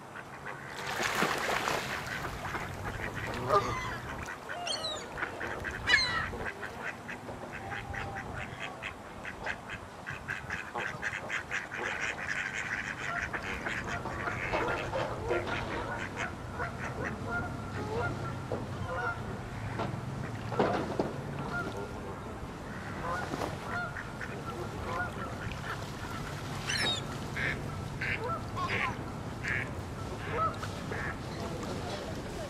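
Canada geese honking and ducks quacking on the water, calling in irregular bursts, with a dense run of rapid calls in the middle and a series of spaced honks near the end.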